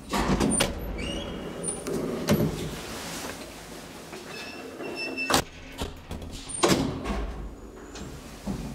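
Old Graham Brothers traction elevator's car doors being worked by hand: sliding and clattering metal with brief high squeaks and sharp clicks, a loud clack about five seconds in and another clatter near seven seconds, over a low steady hum.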